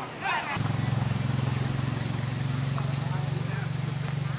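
An engine running steadily with a low, even, rapidly pulsing hum that cuts in suddenly about half a second in.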